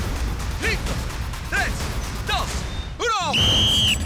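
Three short shouted calls over background music, then a quick falling sweep about three seconds in and a steady high-pitched start signal held for most of a second, as the racers set off.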